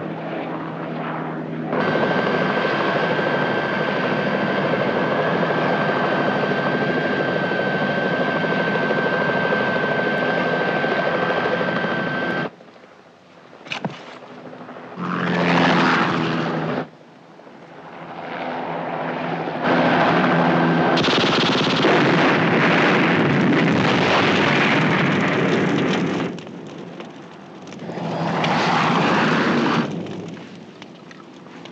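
Bell JetRanger helicopter's turbine running with a high steady whine, cut off abruptly after about ten seconds. After that come loud, rough stretches of gunfire mixed with aircraft engine noise, broken by sudden cuts.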